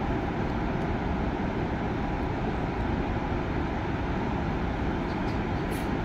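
Steady, unbroken rushing roar of a large waterfall.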